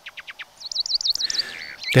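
European greenfinch singing its melodic song: a fast trill of falling notes, then a slower, wavering warble, short phrases at different tempos.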